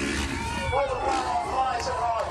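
Man's commentary over an outdoor public-address loudspeaker, with a motocross bike's engine revving underneath as the rider runs up to and launches off the jump ramp.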